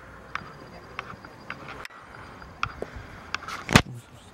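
Quiet outdoor background with scattered light clicks and one sharp knock near the end.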